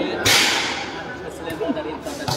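A volleyball struck hard by a player's hand: one sharp smack about a quarter second in, trailing off over about half a second in the echo of a large metal hall, over the murmur of the crowd.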